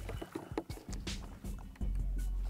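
Background music with a steady low bass line, over a scatter of short clicks and knocks.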